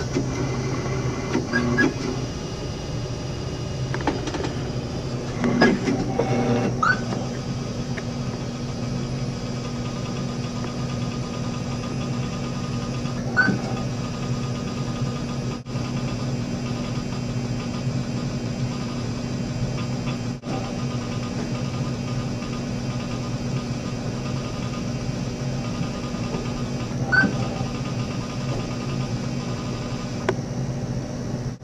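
Steady electrical hum of running 1960s LINC computer equipment, with a short rising squeak now and then, about half a dozen times.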